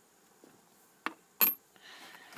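Two sharp metallic clicks about a second in, the second louder with a brief high ring: a socket wrench and the steering-wheel retaining nut clinking against each other as the nut comes off.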